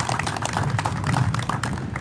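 Audience applause: many hand claps at once, thinning out near the end.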